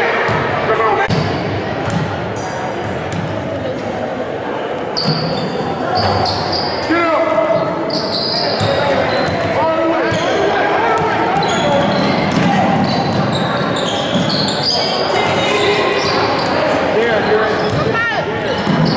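Basketball being dribbled on a hardwood gym floor during a game, with repeated bounces, short squeaks from sneakers, and voices from players and spectators echoing in the large hall.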